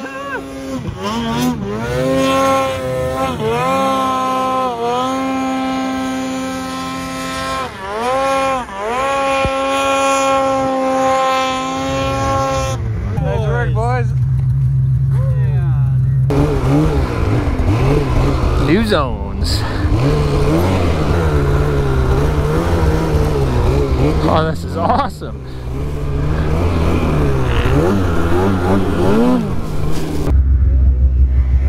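Two-stroke snowmobile engines running hard at high revs in deep powder. For about the first twelve seconds one sled holds a high steady engine note, its pitch dipping briefly several times. After that a nearer sled runs with a lower, rougher note mixed with rushing noise.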